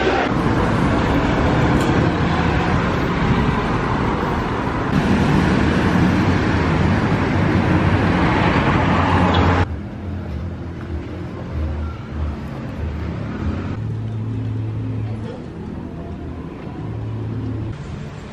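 Loud, dense hubbub of a busy covered market. A little over halfway through it cuts off abruptly to quieter street ambience with a low hum of road traffic.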